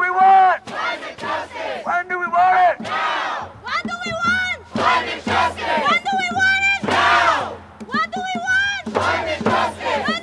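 A crowd of marchers chanting slogans in short, rhythmic shouted phrases, led by a voice through a megaphone.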